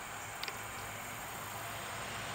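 Steady, low outdoor background hiss with one faint small click about half a second in.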